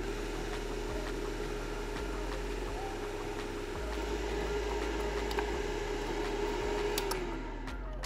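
A UV curing box running its cure cycle, with a steady whirring hum from its cooling fan. About seven seconds in the hum glides down in pitch and stops as the timer runs out and the machine shuts off.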